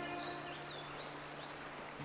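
Several short bird chirps over a steady hiss of flowing water, while a held music chord fades out in the first half second.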